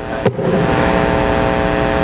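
A man's loud, rasping, drawn-out vocal roar held on one pitch for under two seconds, acted out as an angry woman shouting back.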